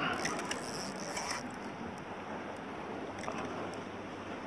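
Spinning fishing reel being worked while a hooked salmon is played close to the kayak, a short spell of mechanical clicking and whirring in the first second and a half and a few faint clicks later, over a steady hiss of wind and water.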